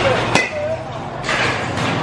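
A baseball bat striking a pitched ball once in a batting cage: a single sharp crack about a third of a second in.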